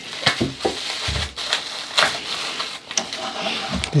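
Scissors snipping through plastic bubble wrap, the wrap crinkling and crackling irregularly as it is cut and handled.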